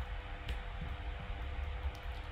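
Steady low hum of a busy computer's fan, with two faint keyboard clicks, one about half a second in and one near the end, as code is typed.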